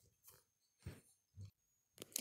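Near silence, broken by three faint, brief mouth noises from the reader close to the microphone.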